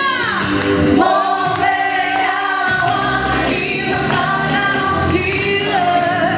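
A woman singing a French pop song live into a microphone, over instrumental backing.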